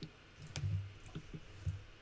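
A few sharp computer mouse clicks, with soft low thumps in between.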